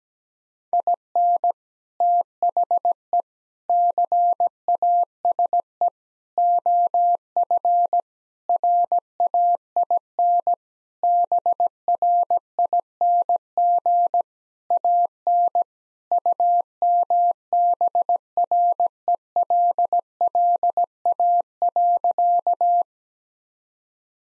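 Morse code beeps on a single steady pitch, sent at 17 words per minute and spelling out the sentence "In the case of rain bring an umbrella". The keying starts about a second in and stops about a second before the end.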